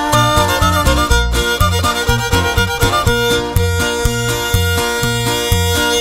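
Wixárika (Huichol) string-band music in an instrumental passage. A violin carries the melody over guitar and a steady, even bass pulse.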